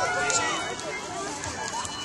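Indistinct voices of people talking outdoors, no words clear, with a few faint clicks.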